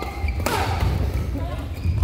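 Badminton rally: a sharp racket strike on the shuttlecock about half a second in and another near the end, with squeaks of court shoes on the floor between them, echoing in a large hall.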